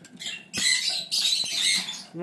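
Adult sun conure giving two harsh, raspy squawks, the first starting about half a second in and the second following straight after it.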